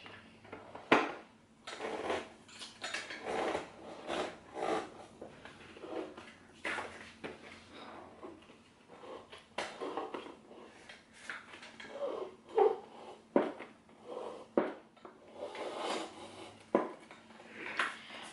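Hot & Hotter hooded hair dryer's plastic hood and metal stand pole being raised and adjusted by hand: scattered clicks, knocks and rattles, the sharpest about a second in and near the end.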